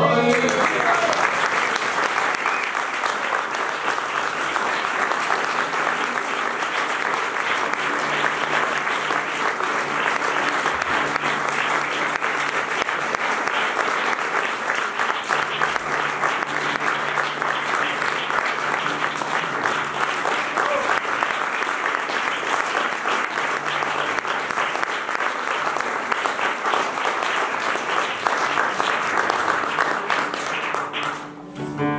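A final flamenco guitar chord rings out and dies away at the very start. Then an audience applauds steadily for the rest of the time, with some crowd voices mixed in.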